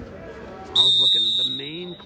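Gym scoreboard buzzer sounding once, a loud high electronic tone starting abruptly about three-quarters of a second in and lasting under a second before fading: the end of the first period of a wrestling bout.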